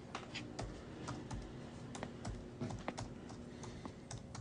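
Laptop keyboard being typed on: irregular, quick keystroke clicks, several a second.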